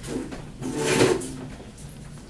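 A chair scraping over the floor, swelling to a peak about a second in and fading within half a second.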